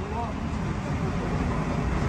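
Indistinct chatter of diners at nearby tables over a steady low rumble.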